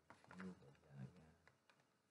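A faint, low voice speaking a few indistinct sounds in short broken snatches, too quiet for any words to be made out.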